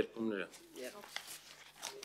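Sheets of paper rustling and crinkling as they are handled and turned, in short scattered crackles with a sharper one near the end.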